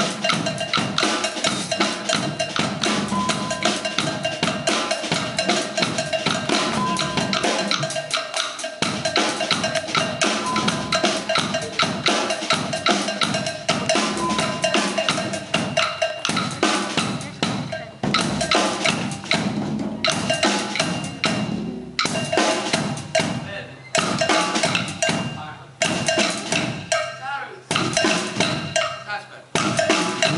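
Percussion ensemble of snare drums, a drum kit and congas playing a fast, dense rhythm together. In the second half the playing breaks off for a moment about every two seconds before coming back in.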